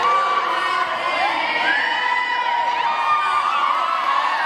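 A large crowd of young people, mostly women, cheering and shrieking in high voices, many voices overlapping at a steady loud level.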